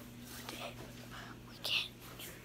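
A boy whispering softly, with a short hiss near the end, over a faint steady hum.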